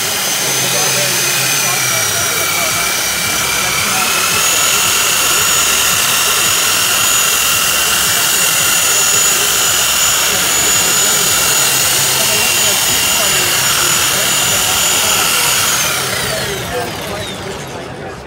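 Lake Country UDOS 51e electric dual-action polisher, set to its 21 mm stroke, running at high speed with a foam pad on a panel. A steady high whine steps up in pitch about four seconds in, then winds down near the end.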